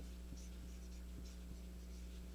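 Dry-erase marker writing on a whiteboard: faint scratchy pen strokes and small taps as a word is written, over a steady low hum.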